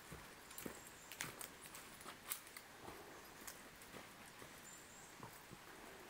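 Faint, irregular light clicks and taps scattered over a quiet outdoor background hiss.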